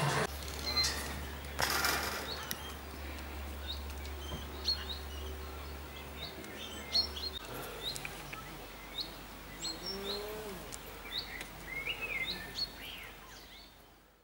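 Small birds chirping, with many short, high calls scattered throughout. A steady low hum runs beneath them for the first half and stops about seven seconds in. Two brief bursts of noise come in the first two seconds, and the sound fades out at the end.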